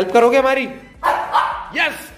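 Shih Tzu puppy whining in a few short calls, the last a quick yip that rises and falls near the end.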